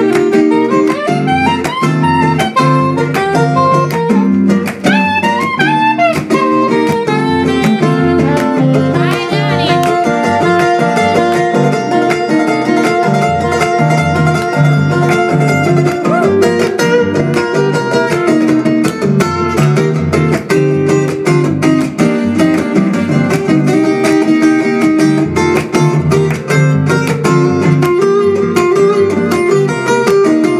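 Acoustic guitar strumming and picking a steady accompaniment while a soprano saxophone plays the melody, with sliding notes and vibrato in the first ten seconds.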